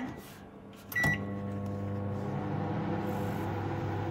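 Panasonic microwave oven control panel beeping as a button is pressed. It beeps again with a click about a second in, and the oven starts, running with a steady hum.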